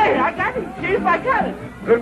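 Speech: voices talking in the film's soundtrack, with no clear words.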